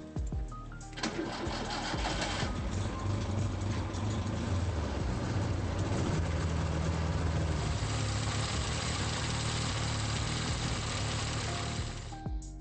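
The rear-mounted four-cylinder engine of a restored Zastava 'Fića' (the Yugoslav-built Fiat 600) starts about a second in and then runs steadily, with a low hum. It gets brighter from about eight seconds in.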